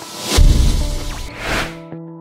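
Logo-transition sound effect over soft background music with sustained notes: a deep boom about a third of a second in, then a whoosh that swells and dies away near the end.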